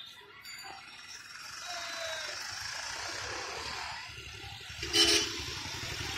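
Road traffic passing on a town street, with a vehicle horn sounding briefly about five seconds in, the loudest moment.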